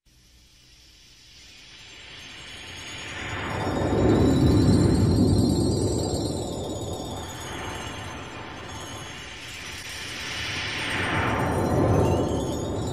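Sea-wave surf effect opening a song's intro: a rushing swell rises out of silence, peaks about four seconds in, falls back, and builds into a second swell near the end. A faint high, wavering held tone runs above it.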